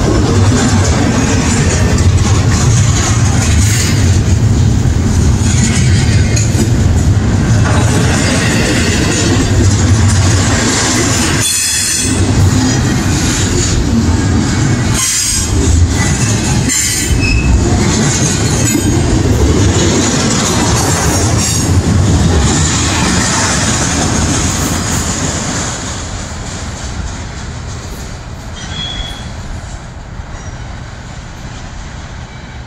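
Double-stack intermodal container train of well cars passing close by, a steady loud rumble and clatter of steel wheels on rail. It fades over the last few seconds as the end of the train goes by.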